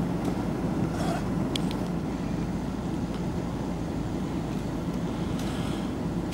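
A car engine idling close by, a steady low rumble with a few faint clicks.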